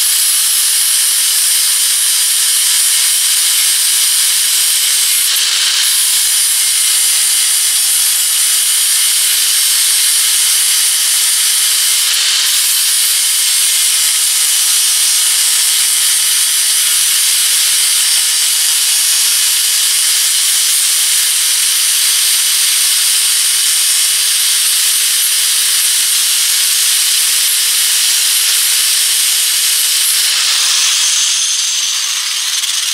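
Electric angle grinder with an abrasive disc grinding a steel air-compressor tank down to bare metal around a pinhole leak, to clean it for soldering. It makes a loud, steady whine and harsh grinding hiss that eases off briefly twice.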